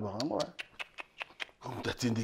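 A man's voice: a drawn-out vocal sound with wavering pitch at the start, then short clipped sounds and speech near the end.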